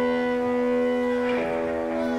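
Live rock band's electric guitars holding a steady, droning chord through the amplifiers. A scratchy burst of guitar noise comes in about a second and a half in.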